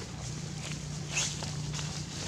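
Leaves and branches rustling and scuffling as a monkey moves in a tree, with one brief, sharp sound about a second in.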